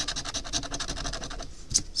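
A scratcher coin scraping the coating off a scratch-off lottery ticket in rapid back-and-forth strokes, about ten a second, stopping about one and a half seconds in, then one or two last strokes.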